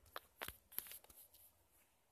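A few faint, sharp clicks and knocks in the first second or so, over near silence.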